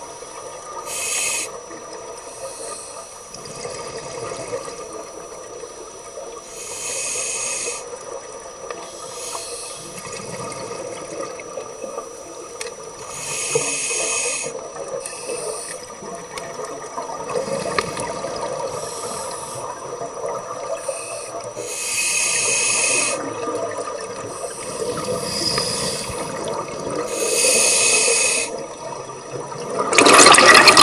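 Underwater recording of a scuba diver breathing through an open-circuit regulator: about a second of bubbling hiss with each exhalation, repeating every six to eight seconds over a steady underwater hum.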